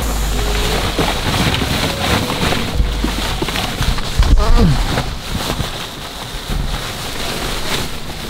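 Many hollow plastic ball-pit balls clattering and rustling against each other as they shift about, a dense crackle of small knocks.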